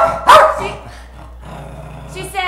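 Small dog barking twice in quick succession at the start.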